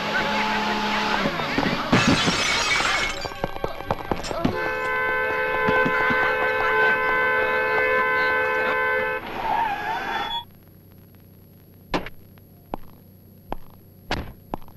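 Car horn sounding continuously for about four and a half seconds, after raised voices and a loud smashing crash about two seconds in. Then it goes much quieter, with a few short knocks near the end.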